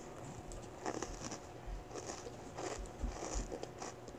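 Faint, soft footsteps and light thuds of a child walking across a carpeted floor and sitting down on it, with a few low bumps in the second half.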